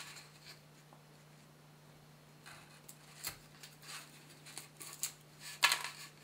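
A thin sheet of gypsum being split by hand along its cleavage: faint scratching and small snapping clicks as it comes apart in little flakes, with the sharpest cluster of snaps near the end.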